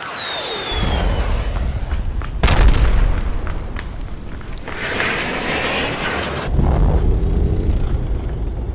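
Deep booming rumble with high falling whistle-like tones, jumping suddenly louder about two and a half seconds in and swelling again near the end, typical of dramatic film sound effects laid under a chase.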